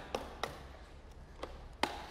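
Mallet striking a chisel cut into a heavy greenheart timber beam: a few sharp, separate knocks, the loudest near the end.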